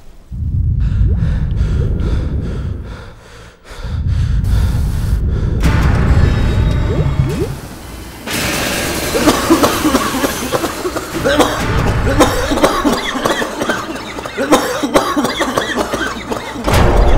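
A man coughing over background music.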